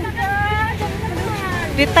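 Indistinct voices over a steady low rumble of street traffic, with a person starting to speak near the end.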